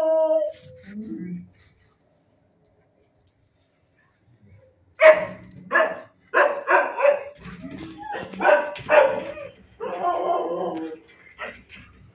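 Dogs barking in a shelter kennel, a quick run of repeated barks starting about five seconds in, after a short pitched call at the start.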